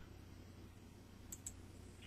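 Near silence with a faint steady hum, and two quick faint clicks about a second and a half in.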